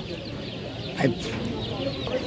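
A cage full of young chicks cheeping, with many overlapping high peeps.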